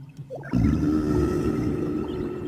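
Whale call sound effect: one long, low call that starts about half a second in and slowly fades.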